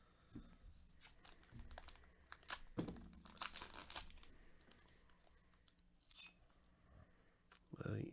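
Foil wrapper of a pack of baseball cards being torn open and crinkled by hand, in a run of short bursts that are loudest around the middle.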